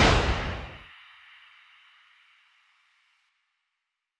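Whoosh sound effect for an animated logo reveal, loudest at the start, with a ringing tail that fades out over about three seconds.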